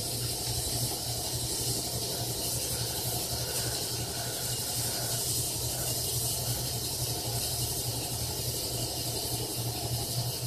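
Steady hiss over a low, constant hum: the running noise of refrigerators and a fish tank's equipment.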